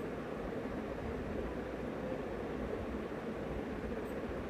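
Steady background noise: an even hiss with a low hum underneath, with no distinct events.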